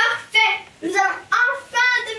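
A child's high-pitched voice singing in short phrases.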